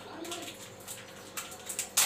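Plastic wrapper of an Oreo biscuit packet crinkling as it is handled and torn open, with sharper crackles near the end.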